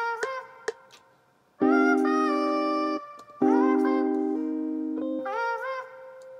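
A three-note chord sounding from a sampled instrument in FL Studio's piano roll, sounding four times with gaps between. Each note bends up slightly in pitch as it starts, and there is a short near-silent gap about a second in.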